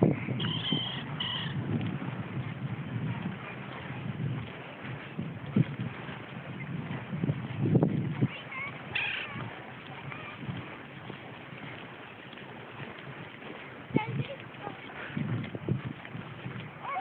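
Footsteps and handling noise from a phone carried on a walk, irregular low thumps, with indistinct voices and a few short high calls in the background.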